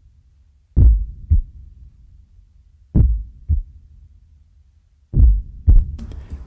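Heartbeat sound effect: slow double thumps ('lub-dub') repeating about every two seconds, three beats in all, deep and low.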